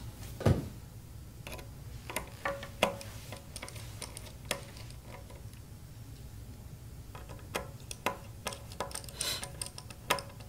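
Small screwdriver turning the corner screws of a circuit board: scattered light clicks and ticks of metal on screw heads and board, with a soft knock about half a second in, over a faint low hum.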